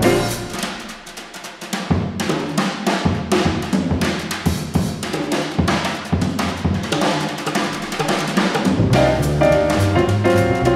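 Jazz drum kit playing a solo break, with snare, bass drum and cymbal strikes while the double bass and piano drop out. The bass and piano come back in near the end.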